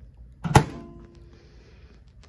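A countertop microwave's door is pushed shut with a single sharp thunk about half a second in, followed by a faint ringing that dies away within about a second.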